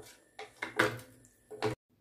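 A spatula stirring rice and water in an aluminium pressure cooker: about three short scraping strokes, then the sound cuts off abruptly near the end.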